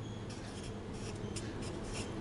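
Marker pen writing on chart paper: a run of short, faint strokes.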